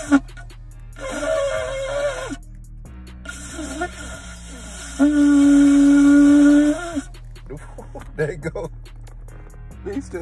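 A large shofar (ram's horn) blown by a beginner: a short, higher note about a second in, a few weak sputters, then a long, loud, steady blast from about five to seven seconds in.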